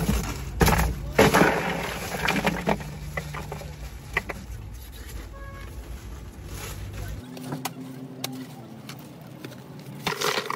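Plastic water bottles being handled and set into a plastic cooler: irregular knocks, clunks and plastic rattles, busiest in the first few seconds and sparser afterwards.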